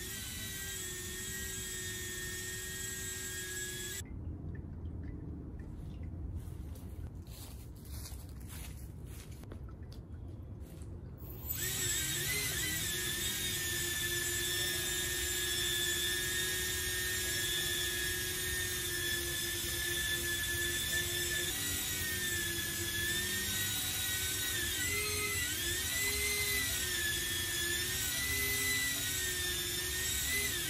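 Electric ducted fans on a self-balancing wooden board running with a high whine, their pitch wavering as the PID controller speeds them up and slows them down to keep the board upright. The whine thins out for several seconds near the start, then comes back louder. In the last third the pitch swings up and down over and over as the board rocks and the fans correct it.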